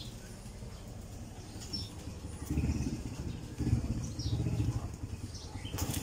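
An engine running with a rapid low pulse, growing louder about two and a half seconds in. A few brief, faint high bird chirps sound over it.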